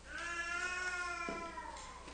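A small child's single drawn-out cry, about a second and a half long, dropping a little in pitch as it fades.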